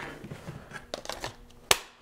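Handling noise as a metal workpiece and a cordless polisher are moved about on a cutting mat: light rustling and small clicks, with one sharp click near the end. The polisher is not running.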